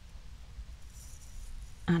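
Quiet room tone with a low steady hum, and a faint brief rustle of handling about a second in.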